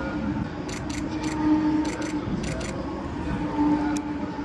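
Handling noise: several short, light clicks and scuffs while a camera is carried and repositioned, over a steady background hum.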